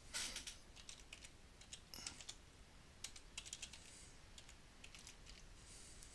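Faint typing on a computer keyboard: several short runs of key clicks as a file name is typed in.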